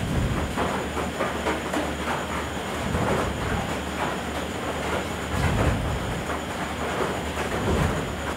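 A steady rumbling noise with irregular faint clattering, with no speech.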